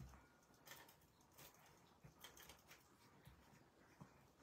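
Near silence, with faint rustles and light taps of cardstock being handled while a white mat is readied to stick onto a card base.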